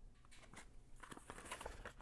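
Faint crinkling and light ticks of a paper tobacco wrapper being handled around a stack of pipe-tobacco flakes.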